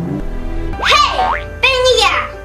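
Children's background music with a cartoon sound effect laid over it: a quick boing-like pitch glide, rising then falling, about a second in, followed near the end by a short voice-like cry.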